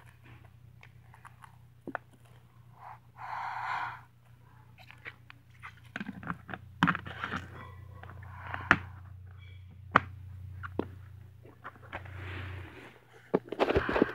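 Cheese balls being eaten, with crunching mixed with the handling of a plastic cheese-ball jar: scattered clicks and knocks and a few short rustling bursts. A low steady hum runs underneath and stops near the end.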